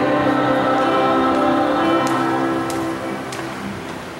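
A choir singing a hymn in long held notes, dying away about three seconds in, with a few faint clicks near the end.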